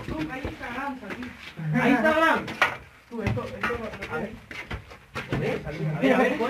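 Mostly men's voices talking and calling to each other in a cramped passage where they are moving crouched, with a few scuffs and knocks from them moving through it.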